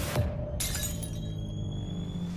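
Trailer sound effect: a sharp crash about half a second in, followed by high ringing tones that fade over about a second, over a low music drone.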